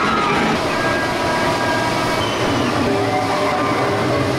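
Expedition Everest roller coaster train running down the drop and past, a steady rumble and rush of the cars on the steel track. Riders' screams trail off in the first moment.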